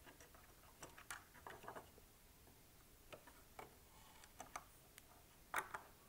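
Faint, scattered small clicks and taps of metal and plastic parts being handled at a CPU socket: the Threadripper's orange carrier frame, the socket's metal retention frame and the torque driver, with a louder pair of clicks near the end.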